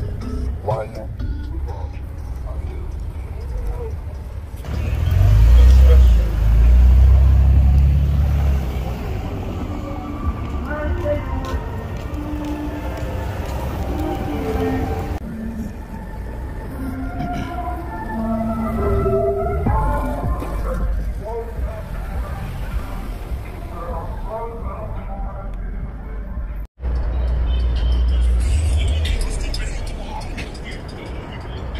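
Cars driving slowly past, with a deep rumble that is loudest about five to nine seconds in and returns near the end. Music and voices play over it, and the sound cuts out for an instant near the end.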